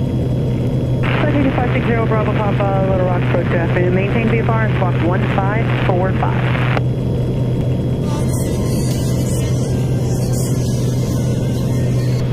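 Steady low drone of a Piper Saratoga's six-cylinder engine and propeller in flight, heard through the headset intercom. A voice talks over it from about a second in to nearly seven seconds, and a crackling intercom hiss comes in for the last few seconds.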